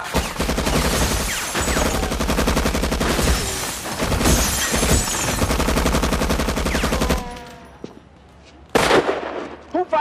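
A long volley of gunfire from many police guns at once, dense and rapid shots for about seven seconds, then stopping abruptly. A single loud bang follows about a second and a half later.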